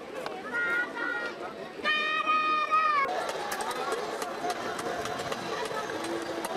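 Outdoor street sound of people talking. A high-pitched voice calls out briefly, then gives a long, high held call about two seconds in that bends down at its end. After that, a steady murmur of voices with small scattered clicks.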